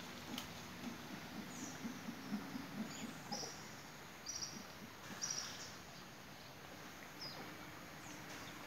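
Mantled howler monkey giving a faint run of short, low grunts over the first three seconds, followed by a few brief high chirps from a bird.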